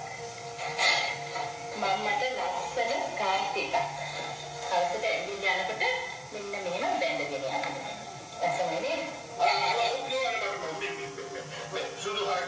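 Soundtrack of a television drama clip: dialogue spoken over background music.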